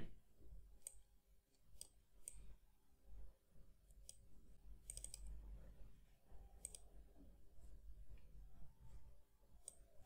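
Near silence broken by faint computer mouse clicks: a handful of single clicks spread through, with a quick cluster about halfway.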